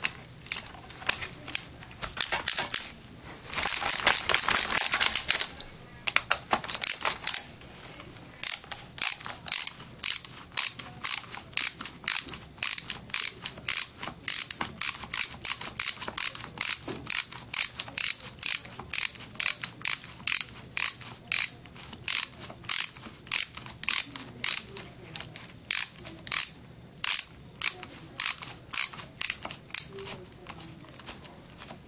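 Screwdriver ratchet clicking as screws are worked out of a vacuum cleaner motor: a quick run of clicks about four seconds in, then an even back-and-forth stroke about twice a second.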